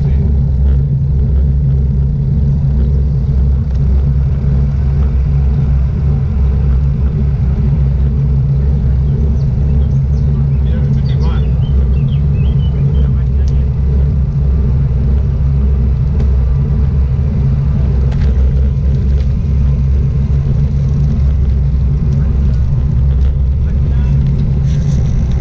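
Steady low rumble of wind buffeting and tyre noise picked up by a GoPro action camera mounted on a road bike riding on asphalt.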